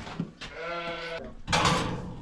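A lamb bleats once, a single wavering call lasting under a second, followed near the end by a louder, short burst of noise.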